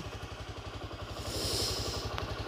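Motorcycle engine running steadily at low revs, its firing pulses even, as the bike rolls slowly along. A faint hiss swells in the second half.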